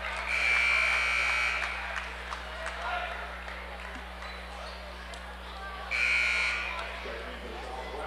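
Gym scoreboard buzzer sounding twice, a long blast then a shorter one, the signal for a substitution during a stoppage in a basketball game.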